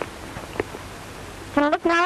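Steady hiss of an old film soundtrack, with a couple of faint clicks in the first second, then a voice starting near the end.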